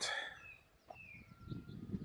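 Birds calling faintly: a few short high chirps and brief falling calls, with one longer steady whistled note about halfway through.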